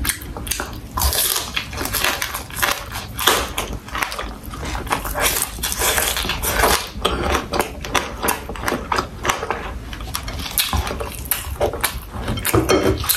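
Chewing and crunching of fried quail in the mouth: a rapid, uneven run of crackles and wet mouth clicks.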